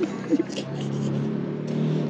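A car engine on the street accelerating, its low hum growing louder and rising slightly in pitch in the second half.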